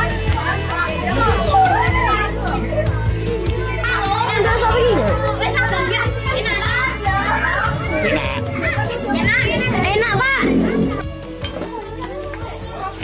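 Many children talking and calling out over one another, with background music running underneath.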